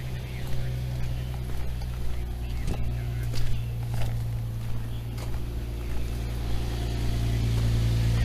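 A car engine idling, a steady low hum that grows a little louder toward the end, with scattered light knocks and rustles.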